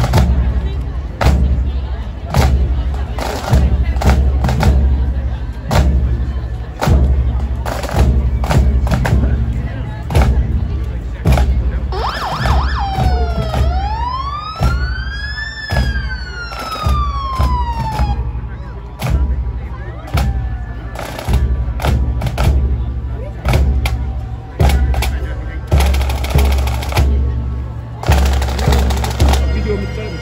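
Pipe band drum corps (snare, tenor and bass drums) playing a loud marching cadence over a steady bass-drum beat. About halfway through, a siren wails once, rising then falling over several seconds.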